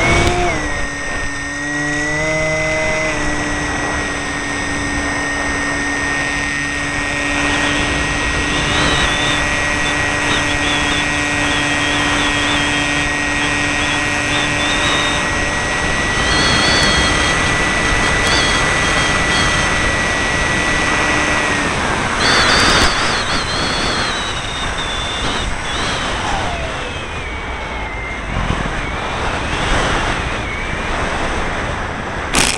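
Electric motor and propeller of a Multiplex FunCub RC model plane, heard from an onboard camera: a loud, steady whine that shifts pitch in the first few seconds and then holds. It cuts off suddenly about two-thirds of the way through as the throttle is closed, leaving the rushing noise of air over the microphone.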